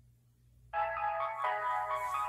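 Telephone hold music playing over the phone line, starting about a third of the way in after a faint hum: a bright, synthetic-sounding tune whose chords change about every second.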